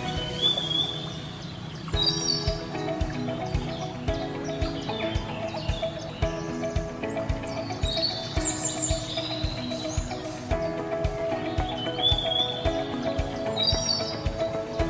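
Background music with a steady beat and sustained chords, with short bird-like chirps mixed in every few seconds.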